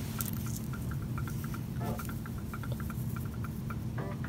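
Small irregular clicks and ticks of steel pennies being handled and picked from a pile with satin-gloved fingers, over a steady low hum.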